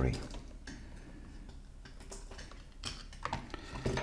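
Faint small clicks and handling noises from wires and a small plastic battery connector being unplugged and plugged onto a circuit board, with a short cluster of clicks about three seconds in.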